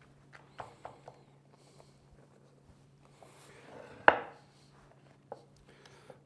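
Hands pressing fresh lasagna pasta sheets down into a ceramic baking dish: faint soft taps and rubbing, with one sharper knock about four seconds in.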